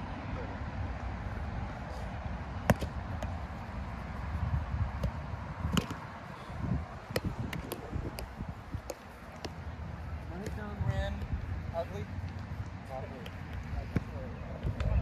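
Sharp slaps of a roundnet ball being hit by hands and bouncing off the net, a few times, the loudest about three and six seconds in, over wind rumbling on the microphone. Faint voices come in later.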